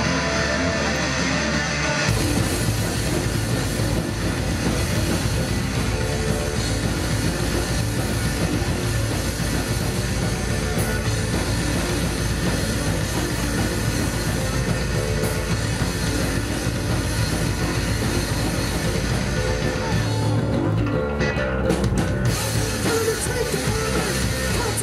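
Punk-hardcore band playing live: electric guitars and drum kit. The full band comes in about two seconds in, and the cymbal-range highs drop away for a couple of seconds near the end before the full sound returns.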